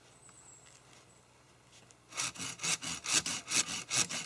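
A coarse-toothed SOG folding saw cutting through a hard wooden hiking staff. It starts about halfway in with quick, even rasping strokes, around five a second.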